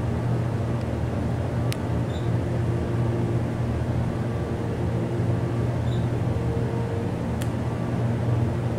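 Hydraulic elevator's pump motor running with a steady low hum as the car rises, heard from inside the cab. Two faint clicks about two seconds in and near the end.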